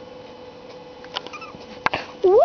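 Pug puppy giving a faint, short squeak in the middle, with a few sharp clicks of movement, the loudest just before the end, over a steady low hum.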